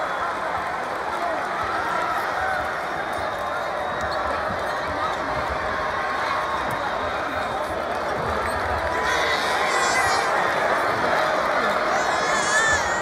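Arena crowd noise of many overlapping voices, with a basketball being dribbled on a hardwood court. Short high-pitched squeaks come in about nine seconds in.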